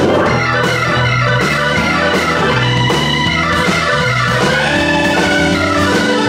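Live blues band playing an instrumental passage: an organ-toned keyboard holds sustained chords over electric bass and a drum kit with cymbal strikes.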